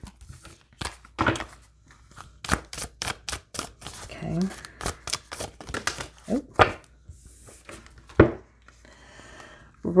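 Oracle cards being shuffled by hand: a quick run of sharp card snaps and clicks, densest in the first few seconds, followed by scattered single clicks as cards are handled on the table.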